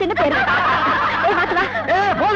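A group of people laughing together, many voices snickering and chuckling over one another, with a low steady hum underneath.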